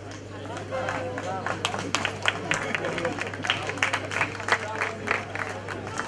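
A crowd of spectators clapping in scattered, uneven claps amid voices and chatter.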